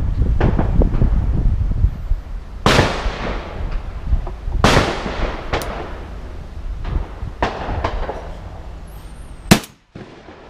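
Shotgun shots at a clay-shooting range: two loud shots about two seconds apart, each trailing off in an echo, then a few fainter shots. Wind rumbles on the microphone at first, and a sharp pop comes just before the end.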